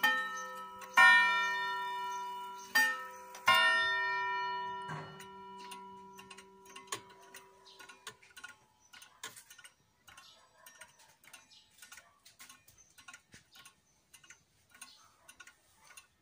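Striking mechanism of a 1960 Soviet pendulum wall clock: its hammers strike about three more ringing hour strokes in the first four seconds, each dying away slowly. After that the movement ticks faintly and steadily.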